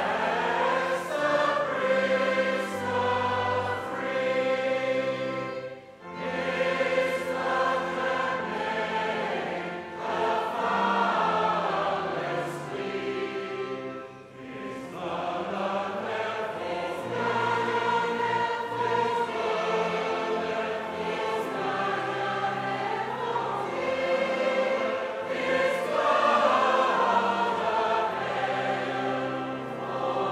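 Church choir of adult and children's voices singing in harmony, with short pauses between phrases.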